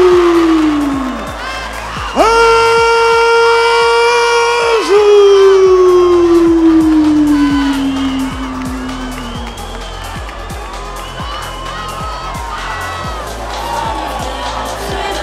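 A ring announcer's long, drawn-out shout of a fighter's name. The tail of one call slides down and fades in the first second. A second call starts about two seconds in, holds steady for a couple of seconds, then slowly falls in pitch. Under it a crowd cheers and whoops, with arena music.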